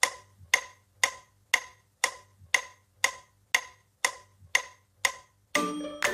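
Steady electronic metronome clicks, about two a second, each a short bright tick. They stop near the end as music starts.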